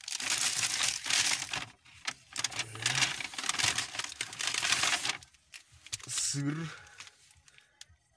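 Paper grocery bag and plastic food wrappers rustling and crinkling as a hand rummages in the bag and pulls out a packet. The rustling is loud and continuous for about the first five seconds, then turns quieter and intermittent.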